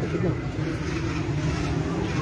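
Street ambience: vehicle traffic running steadily, with voices of a gathered crowd talking in the background.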